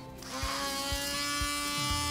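Handheld Dremel rotary tool with a sanding bit switched on, its high electric whine rising briefly as it spins up and then holding steady.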